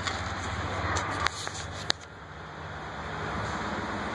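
Steady low mechanical hum under a broad background noise, with two sharp clicks a little over a second and about two seconds in.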